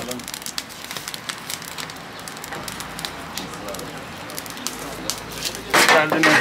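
Open wood-and-charcoal fire crackling and popping in a döner grill, with frequent sharp snaps over a steady hiss. A brief louder noise comes right at the end.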